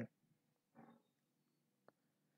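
Near silence in a pause of the narration, with one faint short sound about a second in and a tiny click near the end.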